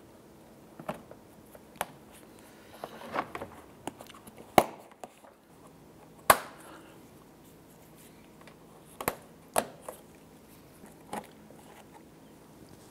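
Plastic push-pin retainers being pressed by hand into the bumper cover and splash shield, giving a series of sharp clicks and snaps at irregular intervals. The two loudest snaps come about four and a half and six seconds in.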